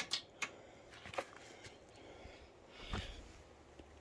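A few faint, sharp clicks and light metallic taps in the first second and a half, then a brief soft rustle about three seconds in: small handling sounds of tools and parts during excavator maintenance.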